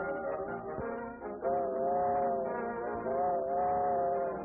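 Old cartoon orchestral score with two long held brass chords, one about halfway through and one near the end, over busier accompaniment; the sound is thin and dull, as in an early film recording.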